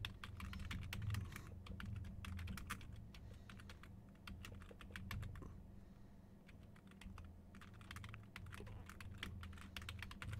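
Typing on a computer keyboard: runs of quick, irregular keystroke clicks with brief pauses, over a faint steady low hum.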